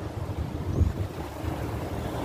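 Wind buffeting the microphone: an uneven low rumble over a faint, steady wash of outdoor noise.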